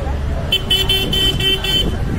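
A vehicle horn sounding a rapid run of about six short beeps, starting about half a second in, over a low outdoor rumble.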